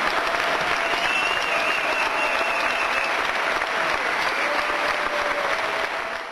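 Theatre audience applauding a curtain call: dense, steady clapping throughout.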